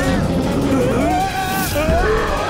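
Cartoon soundtrack: several voices crying out over background music, with a low rumble underneath.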